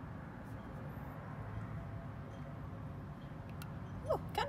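Steady low outdoor background rumble, like distant traffic or wind on the microphone, with a faint tick or two and no distinct splash.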